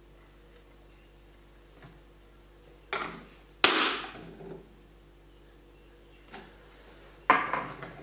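Knocks of a plastic bottle and a small glass being handled and set down on a tabletop: two knocks about three seconds in, the second the loudest, a faint click later, and another sharp knock near the end.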